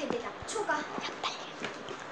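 A child's voice, quiet and brief, making a short vocal sound early on, with a few light clicks and knocks.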